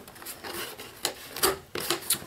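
A cardboard shipping box being handled: hands rubbing and sliding it, with a few short scuffs and scrapes of cardboard in the middle as its tuck-in lid is worked open.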